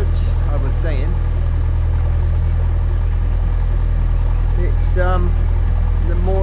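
Narrowboat engine running at a steady cruising speed: an even, low drone that does not change.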